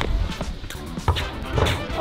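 Background music with a steady beat, over which a single sharp thud sounds about a second in.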